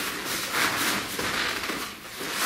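Rustling and scuffling of people grappling at close quarters: clothing brushing and feet shuffling on a mat, heard as an uneven noisy rustle with a few light taps.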